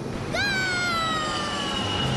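A cartoon child's voice giving one long, high-pitched shout of "Go!", the pitch jumping up at the start and then sliding slowly down.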